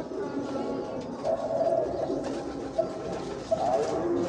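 Domestic pigeons cooing, a series of low, drawn-out coos at a few different pitches overlapping one another.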